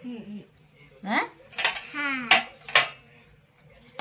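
Steel spatula scraping and clinking against a stainless-steel pot and compartment plate as cooked rice is served, with a few sharp metal clinks in the second half.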